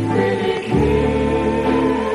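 Doo-wop music: a vocal group singing in held harmony.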